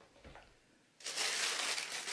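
Tissue paper in a shoebox being crinkled and folded over by hand. It starts suddenly about a second in, after a quiet first second.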